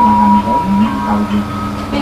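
Music from a wedding video playing on a television: steady held notes, a low one and a higher one, with the low note breaking off briefly a couple of times.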